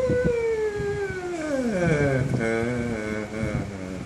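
A man's voice in one long falling wail, sliding from a high note down to a low one over about two seconds, then holding the low note with a wavering shake.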